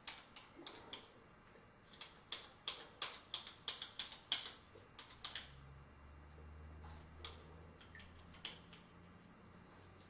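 Faint, sharp metallic clicks and clinks from a chandelier's decorative metal chain and links being hooked onto the ceiling mount, about a dozen over a few seconds. A faint low hum follows.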